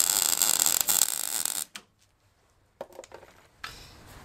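MIG welding arc crackling steadily as a bead is laid with argon–CO2 shielding gas flowing, then cutting off sharply under two seconds in. A few faint clicks follow.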